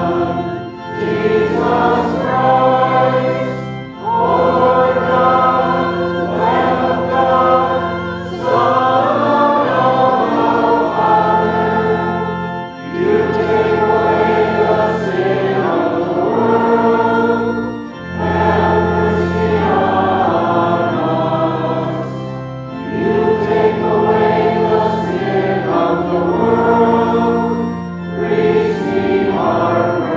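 Congregation singing a liturgical song of praise with organ accompaniment. The singing goes in phrases of held notes, with short breaks between phrases.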